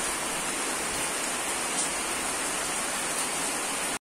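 Steady, even background hiss with no distinct events, cutting off suddenly at the end.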